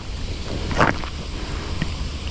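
Wind buffeting the microphone as a steady low rumble, with one short, sharp sound a little under a second in.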